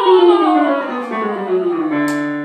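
A lyric soprano's voice sliding steadily downward in one continuous glide from a high note to a low one, as a vocal exercise.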